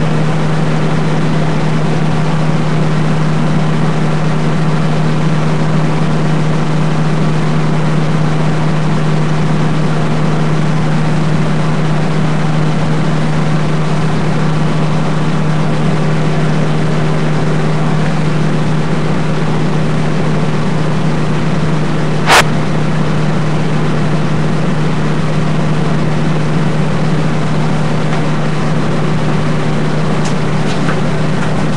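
Air conditioner fan running with a steady hum and even rushing noise; a single sharp click sounds about two-thirds of the way through.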